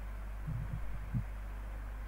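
Steady low electrical hum from the recording setup, with a few brief soft low thumps about half a second in and again just after a second in.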